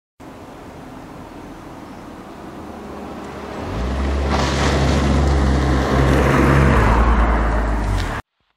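1991 Rover 216 SLi automatic saloon approaching and driving past. Its engine and tyre noise grow louder from about three and a half seconds in and are loudest near the end.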